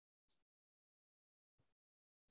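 Near silence, with only a very faint, brief blip about a third of a second in.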